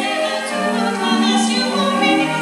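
Recording of a choir singing held chords in several voice parts, played back through a compact stereo's speakers.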